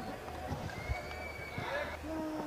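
Faint stadium ambience of distant shouts and drawn-out calls from people on and around a cricket ground, with one long high call about a second in.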